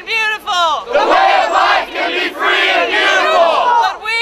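A crowd shouting a line of speech back in unison, people's-mic style, after a single voice has called it out. The lone caller is heard for about the first second, then many voices shout the line together, slightly out of step.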